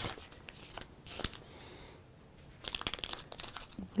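Paper-backed iron-on fusible adhesive sheet crinkling as it is handled and cut with scissors, with scattered snips and a busier run of short crackly cuts in the last second or so.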